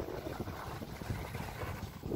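Wind on the phone's microphone during a chairlift ride: an uneven low rumble with no steady tone.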